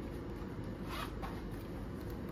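Zip of a small black harmonica carrying case being pulled, with one short rasping run about a second in.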